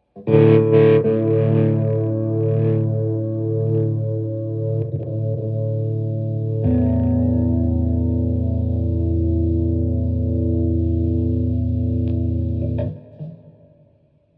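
Electric guitar through distortion and chorus effects, holding one sustained chord that starts suddenly, shifts to a lower held chord about six and a half seconds in, and cuts off abruptly near the end.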